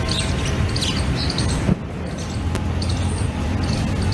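Outdoor ambient noise: a steady low rumble with faint scattered higher sounds, broken by a short dip about two seconds in.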